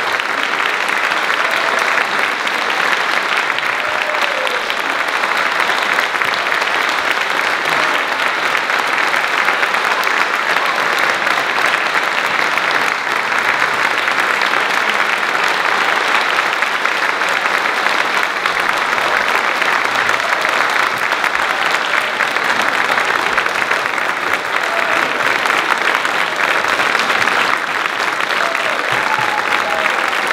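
A large audience applauding steadily and densely in a long ovation.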